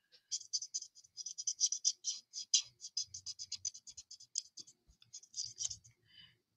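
A Stampin' Blends alcohol marker's tip scratching on cardstock in quick, short strokes, about five a second, as a stamped image is shaded.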